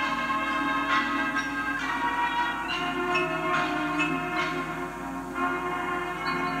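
Recorded marching band music played back through a boombox's speakers: sustained brass chords with bell-like struck notes over them.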